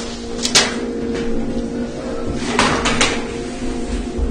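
A few sharp knocks and clacks, like a cupboard door or hard objects being handled: a pair about half a second in and a few more near three seconds in, over a steady low hum.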